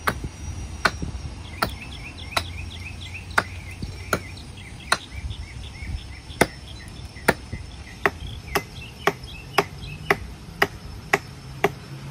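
Axe chopping into a standing tree trunk: about seventeen sharp strikes on the wood, roughly one every 0.8 s at first, quickening to about two a second in the second half.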